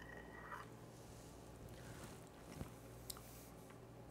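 Near silence: faint room tone with a few small clicks and soft mouth sounds of a spoonful of liquid being tasted.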